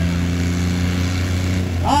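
Ghazi 480 diesel tractor engines running hard under steady full load as two tractors pull against each other in a tug-of-war: a low, steady drone. A man's voice over a PA starts near the end.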